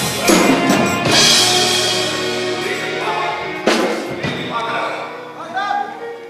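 Live band with drum kit playing, with a cymbal crash about a second in and another hit just before four seconds; the music thins out near the end as a voice comes in.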